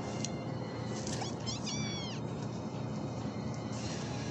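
Background music under a quick run of high, squeaky cartoon animal cries, each falling in pitch, a little over a second in.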